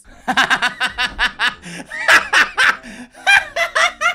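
A man and a woman laughing together, a quick run of ha-ha pulses that keeps going through the whole stretch.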